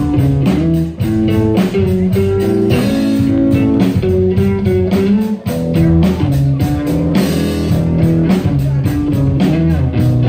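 Live blues band playing: electric guitar over upright double bass and drum kit, with a steady beat.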